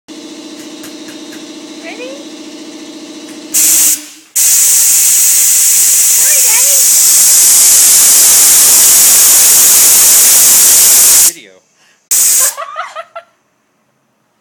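An air blower letting out loud hissing blasts of air: a short one about three and a half seconds in, a long one of about seven seconds, and a brief one near the end, each starting and stopping abruptly. Before the first blast a steady low hum runs.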